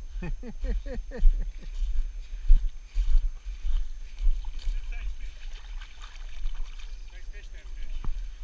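A man laughs briefly at the start; after that there is a steady low rumble of wind on the microphone over faint river-water sounds, broken by a few light knocks.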